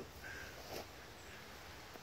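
Quiet outdoor background with a brief faint bird call a moment after the start.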